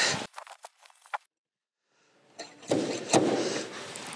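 Handling of glue-pull dent-repair tools at a car door: a few light clicks in the first second, a break of dead silence, then a noisy stretch with a couple of knocks.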